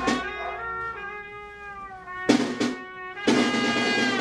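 Band music: a held, slightly bending horn melody over drums, with drum strikes about two and a half seconds in and again just after three seconds.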